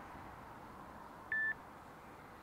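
A single short electronic beep, one steady high tone lasting about a fifth of a second, a little past halfway, over faint background noise.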